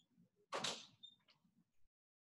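Faint movement noise from someone out of sight: a short rush of noise about half a second in, then a brief high squeak and a small click.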